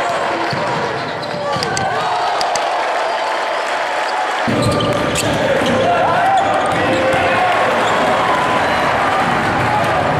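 Game sound from a basketball arena: a ball being dribbled on the court under the hubbub of the crowd and voices. About four and a half seconds in it changes suddenly to a fuller, louder crowd sound.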